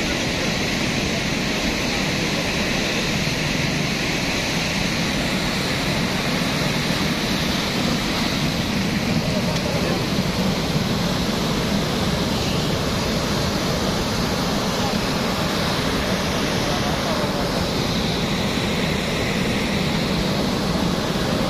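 Cold lahar, a volcanic mudflow of water, sand and debris, rushing fast down a river channel: a loud, steady rushing of churning muddy water with no breaks.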